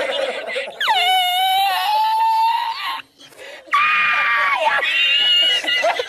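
A man's high-pitched, squealing laughter: a long held wailing cry that slides down and then holds, a brief pause about three seconds in, then another held cry and broken laughing.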